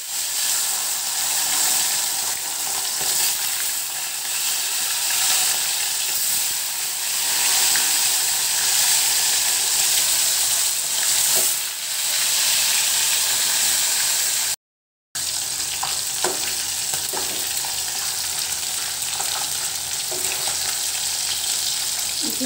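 Katla fish steaks sizzling as they fry in hot oil in a steel kadhai: a steady, dense hiss with a few small pops. The sound cuts out completely for about half a second roughly two-thirds of the way through.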